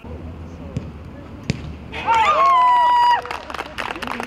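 Small-sided football on artificial turf: two sharp ball kicks, then players shouting, with one loud call held for about a second.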